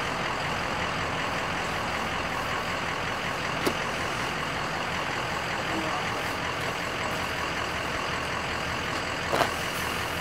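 A steady engine-like drone runs through, with one sharp click a little under four seconds in and a short knock near the end.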